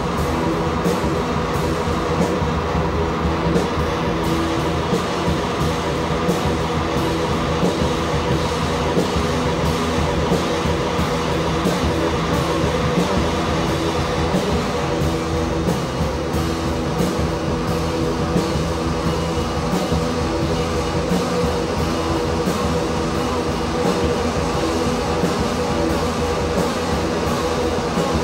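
A rock band playing live: electric guitars hold a loud, dense drone over a steady beat, with no break or change in the playing.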